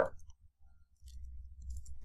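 A few faint, sparse clicks of computer keyboard keys over a low, steady hum.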